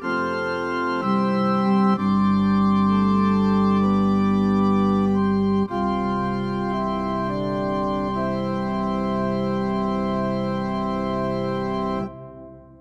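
Organ voice of a Korg G1 Air digital piano playing sustained chords that hold without fading and change a few times. From about six seconds in, the held notes waver slowly.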